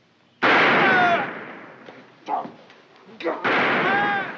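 Two gunshots, the first about half a second in and the second about three and a half seconds in, each a sudden loud crack whose noise lingers and fades over about a second with a falling whine in it.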